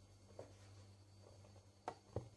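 Near silence with a steady low hum: flour pouring softly from a plastic measuring cup into a bread-maker pan, with one sharp tap near the end.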